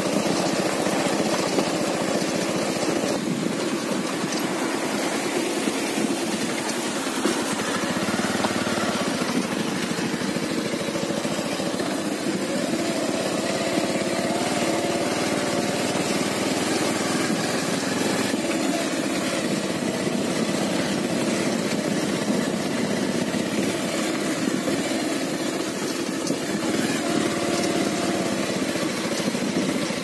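Vehicle engine running steadily while travelling along a rough gravel road.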